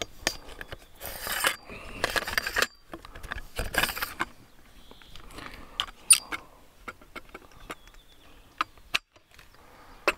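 Handling noise from a tripod being adjusted: three short bursts of rustling in the first half, then scattered sharp clicks and taps.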